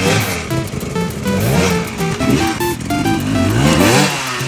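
A dirt bike engine revving several times, each rev rising in pitch, over loud, bouncy video-game-style music with quick stepping notes.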